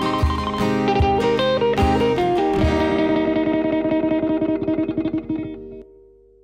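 Acoustic guitars play the closing phrase of a song, a short descending run over a few low cajon thumps. The band then settles on a final chord, strummed rapidly, which fades and stops just before the end.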